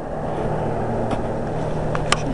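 A car engine running with a steady low rumble and hum.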